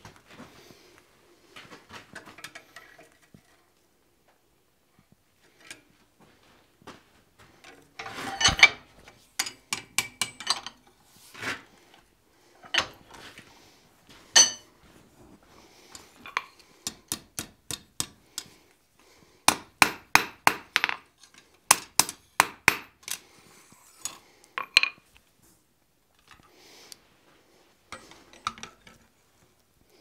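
Hand hammer striking hot iron on a steel anvil in runs of sharp, ringing blows, most densely in the second half at about two to three a second. Lighter clinks and knocks of tongs and steel come between the runs.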